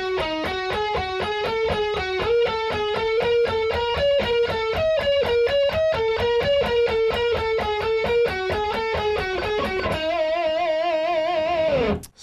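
Seven-string electric guitar (Dean RC7) playing an alternate-picked E blues scale sequence in groups of five along one string, about five even notes a second, climbing to its top about halfway through and then turning back down. It ends on one held note with vibrato for the last two seconds.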